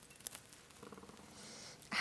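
Faint crackling and ticking of fresh mint leaves torn apart by fingers, then a soft, low, hummed sound from a woman's voice for about a second, ending in a short breath.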